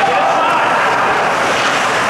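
Steady, loud ice-rink game noise during play, with a voice calling out over it near the start.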